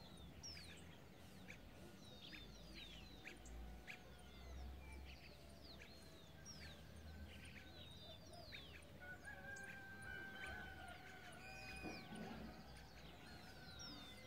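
Faint birdsong: many short, high chirps that fall in pitch, scattered through the whole stretch, over a low rumble of wind on the microphone.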